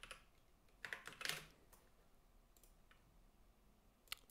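Computer keyboard typing: a short, quiet burst of keystrokes about a second in, then a single faint key click near the three-second mark, with near silence around them.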